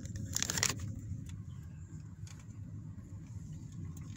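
Car rolling slowly, with a steady low engine and tyre rumble heard from inside the cabin. A brief rattle comes about half a second in.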